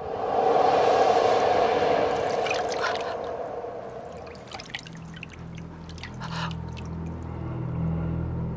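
Water pouring into a bathtub, loud at first and fading over about three seconds, then scattered drips and small splashes. A low, swelling music drone comes in about halfway through.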